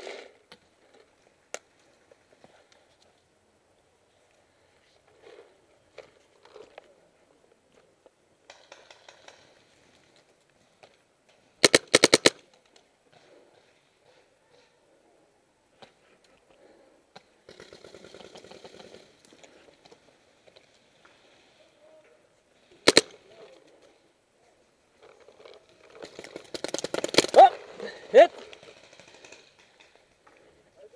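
Paintball markers firing: a quick burst of several shots about twelve seconds in, a single shot some eleven seconds later, and a longer spell of rapid fire in the last few seconds.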